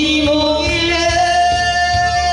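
A woman singing into a microphone over instrumental accompaniment with a steady beat, moving up from a lower note to a long held higher note.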